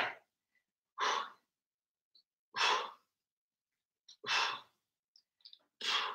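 Three hard exhalations, about one and a half seconds apart, from a person straining through triceps kickback reps.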